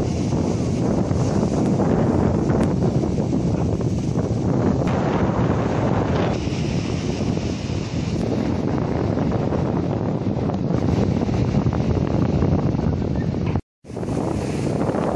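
Strong wind buffeting the microphone over the wash of sea waves breaking on the shore, a steady rough noise that drops out briefly near the end.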